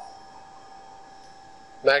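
Quiet room tone: a steady faint hum with a thin constant whine, then a voice starts near the end.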